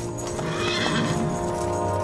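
Horses being ridden at a walk, with hoofbeats and a horse's whinny, under background music of long held notes.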